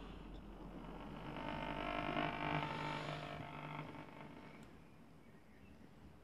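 Schaub-Lorenz Touring 30 transistor radio being tuned: faint hiss and hum, with a station's pitched sound swelling in for about two seconds and fading out again as the dial moves on.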